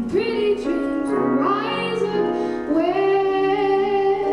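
Female jazz vocalist singing a slow ballad with piano accompaniment. The voice glides through a phrase, then holds one long note from near the three-second mark.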